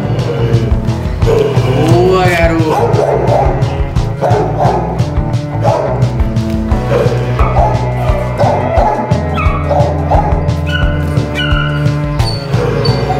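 Background music with a steady beat, over which a young dog yips and barks in short, repeated bursts while tugging on a bite pillow.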